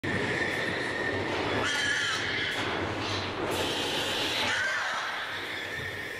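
Pigs screaming during CO2 gas stunning in a slaughterhouse elevator system, coming from pigs lowered further down into the higher CO2 concentration rather than from those in view. Long, high squealing screams stand out twice, about two seconds in and again near four and a half seconds, over a steady din.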